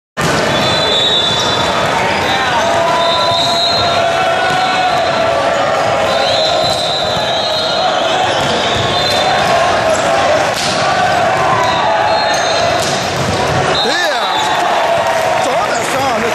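Indoor volleyball rally in a gymnasium: a few sharp ball strikes and short high shoe squeaks on the court, over steady crowd chatter and shouting that echoes in the hall.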